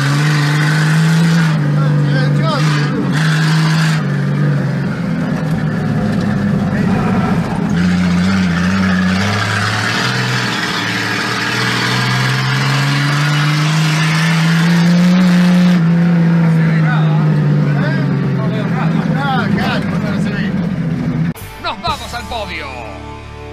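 Race car engine heard from an on-board camera inside the car, running hard on a dirt track, its revs climbing and easing back over several seconds. It cuts off suddenly near the end.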